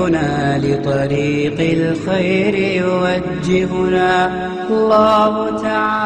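Chanted vocal music: a single voice holds long, wavering notes one after another.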